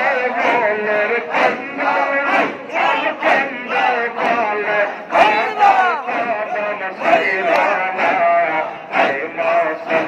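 A large group of men chanting a Sufi zikir together over a loudspeaker, forceful and rhythmic at about two beats a second, with one voice leading on a microphone.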